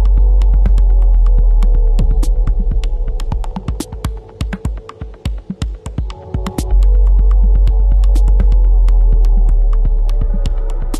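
Electronic music in a DJ mix: a deep, loud sustained sub-bass note under soft synth pads, scattered with sharp, irregular clicking percussion. The bass fades out about two and a half seconds in and swells back in a little before seven seconds.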